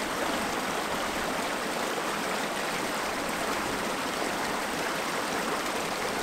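A small rocky stream cascading over rocks below a stone footbridge: steady, even rushing water.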